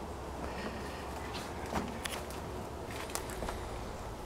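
Quiet outdoor background with a steady low rumble and a few faint, soft footsteps on grass and dirt.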